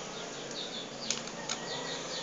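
Light handling sounds from a Samsung netbook's plastic battery pack and case: two sharp clicks, about a second in and again half a second later, among quick, high scraping or rubbing sounds.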